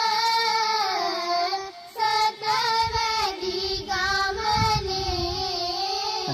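A song sung by a high solo voice in long, gliding notes, with soft low thumps under it around the middle.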